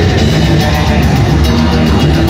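A live heavy metal band playing loudly: electric guitar, bass guitar and a drum kit, at a steady, unbroken level.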